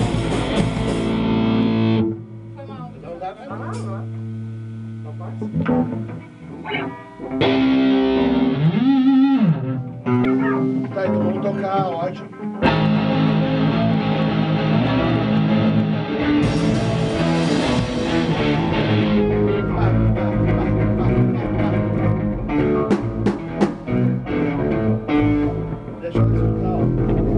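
Hardcore punk band playing live in a rehearsal room, with distorted electric guitars, bass and drum kit. The full band stops about two seconds in. A sparser, quieter stretch of loose guitar notes and a voice follows, and the full band kicks back in about twelve seconds in and plays on.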